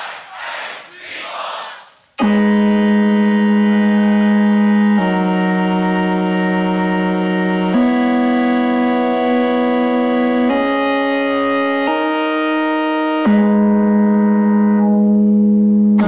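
Sustained synth-pad chords from a BOSS RC-505mkII loop station start abruptly about two seconds in and change chord every couple of seconds, forming a slow chord progression, after a brief stretch of crowd noise.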